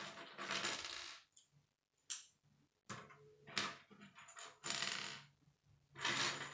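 Loose plastic K'nex rods and connectors clattering and clicking against each other on a wooden tabletop as a hand rummages through the pile, in several short bursts with one sharp click about two seconds in.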